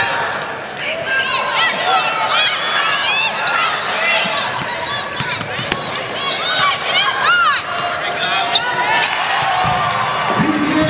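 Live basketball play on a hardwood court: many short, high sneaker squeaks from players cutting and stopping, with the ball bouncing on the floor.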